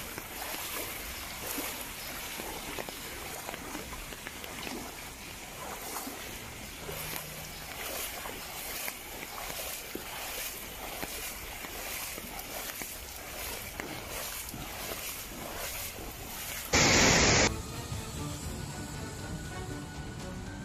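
Steady hiss of heavy rain and floodwater running along a street, with faint music under it. A brief loud burst of noise about three seconds before the end cuts off sharply.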